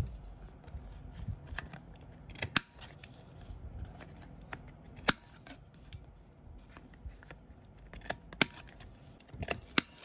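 Handheld corner-rounder punch snapping through the corners of thin cardstock cards, a handful of sharp clicks a few seconds apart, with the rustle of the cards being handled in between.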